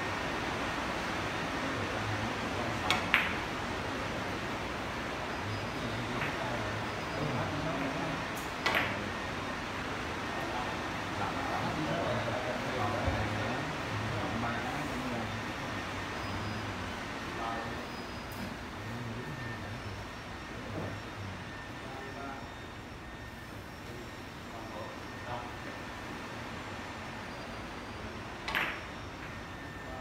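Carom billiard balls being struck with a cue and clicking against each other, heard as a few sharp, isolated clicks: a quick pair a few seconds in, another several seconds later, and one more near the end, over a steady room hum.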